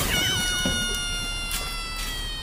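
Comic sound effect: one long, high-pitched call that drops quickly in pitch at the start and then slides slowly lower, following a short brass jingle.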